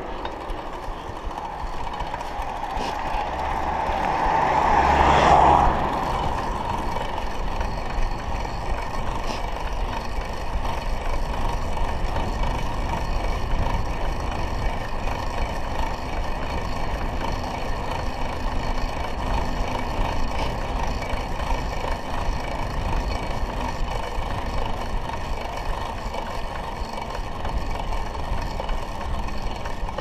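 Steady wind and tyre noise from a bicycle ride, heard through a rider-mounted action camera. It rises into a louder swell about four to six seconds in, then settles back.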